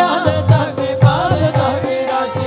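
Live Hindu devotional bhajan: a woman singing a melodic line over a steady held drone note, with a hand-drum beat about twice a second.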